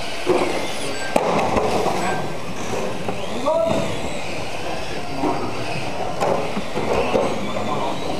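Electric RC mini cars racing on a carpet track: their motors whine up and down in pitch as they accelerate and brake, over a steady hiss of tyres on carpet, with indistinct voices in a hard-walled hall.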